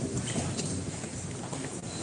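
Room noise of a crowded courtroom: irregular shuffling and small knocks over a steady hiss.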